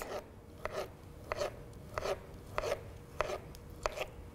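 Kitchen knife slicing a kiwi into thin slices on a cutting board: six short, even cuts about one every half-second or so, each ending in a light knock on the board.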